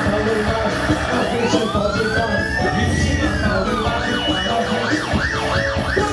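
A siren-like wail over a live band's dance music: one slow rise and fall in pitch, then a quicker wail repeating about four times a second near the end.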